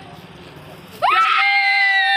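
A person's loud, long held yell. It starts about a second in, rises quickly in pitch and then holds one pitch.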